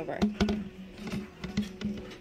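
Background music with steady held tones, with a few short knocks and clicks from handling a heavy jeweled cone-tree decoration as it is tipped over.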